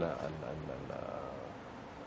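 A man's faint, low, drawn-out hesitation sound between spoken phrases, fading into quiet studio room tone.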